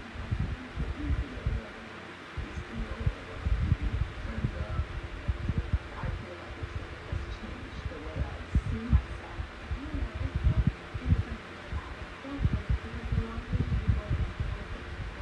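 Comfort Zone 8-inch three-speed high-velocity fan running, a steady whir with its airstream buffeting the microphone in irregular low thumps and gusts.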